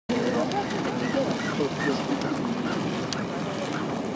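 Geyser vent steadily hissing and splashing as it jets steam and boiling water, a continuous rushing noise, with people's voices chattering over it.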